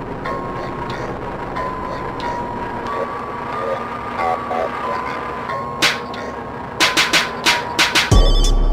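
Slowed, pitched-down skit audio: muffled, dragged-out voices over a dense noisy background with a faint steady tone. A run of sharp hits comes in the last two seconds, as the track builds toward the beat.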